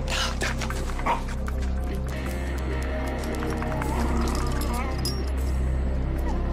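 Background music with a small terrier barking a couple of times near the start.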